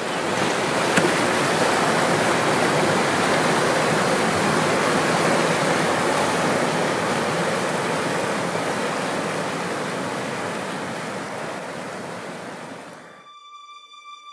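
River rapids: whitewater rushing steadily over rocks, fading down over the last few seconds and cutting off shortly before the end, where steady music tones begin.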